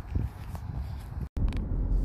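Low outdoor rumble, then an abrupt cut a little over a second in to the steady low rumble of a car's cabin while driving.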